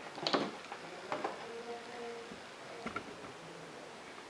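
A few faint clicks and light handling sounds from a power plug and cord being pulled out of a power strip.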